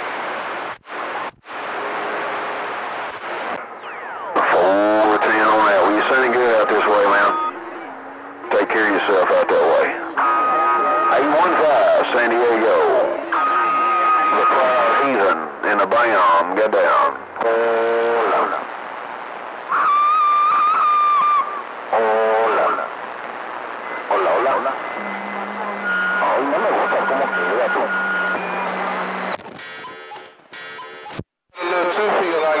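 CB radio receiving on channel 28: static hiss, then from about four seconds in, stretches of distorted, unintelligible voice transmissions, with steady whistle tones cutting in over them at times.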